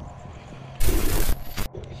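Loud close-up rubbing and scraping right on the microphone, lasting about a second from near the middle and stopping suddenly: handling noise.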